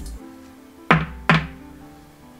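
Two sharp knocks of a hard plastic trading-card case being handled as a card is fitted into it, about 0.4 s apart near the middle, over steady background music.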